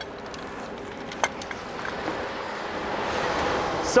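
Steel lifting chains being handled on a crusher rotor: a single sharp metallic clink about a second in, over a steady background noise that swells slightly near the end.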